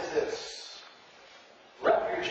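A man's voice in a reverberant hall: a spoken phrase tails off just after the start, a short pause follows, and the next phrase begins near the end.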